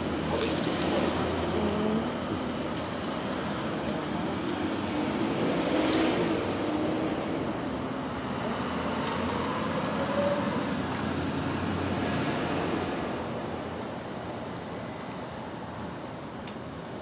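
Cars on a street at low speed: engines idling and a car driving slowly past, under a steady rushing noise that eases near the end.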